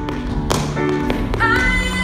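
Tap shoes striking the stage floor in a few sharp taps, the loudest about half a second in, over a recorded pop song with a woman singing a held note near the end.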